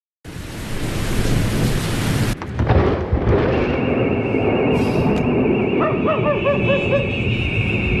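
Storm sound effects: a dense rain hiss that cuts off abruptly about two seconds in, followed by low rumbles. From about three and a half seconds a steady, wavering high tone sets in, with a quick run of rising-and-falling pips near the end.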